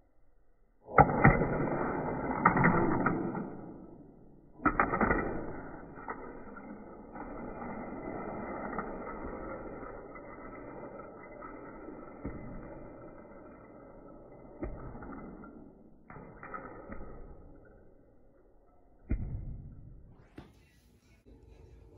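A Hot Wheels die-cast car released from a track launcher with a sharp click about a second in, then its small wheels rolling along orange plastic track with a steady whirring rumble. The rolling breaks off briefly around four seconds, picks up again for about ten seconds and fades out, and a single knock sounds near the end.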